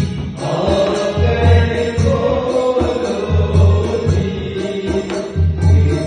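A man sings a devotional-style song with long held notes into a microphone, accompanied by a rope-tensioned two-headed barrel hand drum (dholak) whose deep bass strokes come in clusters about every two seconds.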